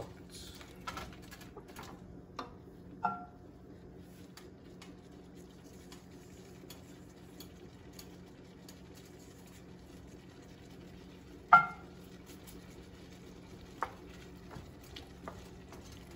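Wooden spoon stirring chicken and tomatoes in a nonstick pan, with faint scraping and sizzling and scattered light knocks over a steady low hum. A ringing clink comes about three seconds in and a louder one about two-thirds of the way through.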